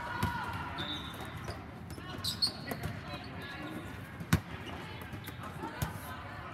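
Volleyball play: sharp slaps of hands and arms striking the ball, the loudest a little past the middle and another near the end, with a couple of brief high squeaks and players' voices in the background.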